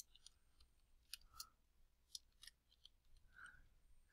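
Faint computer keyboard typing: a handful of short, scattered key clicks as a short word is typed, against near silence.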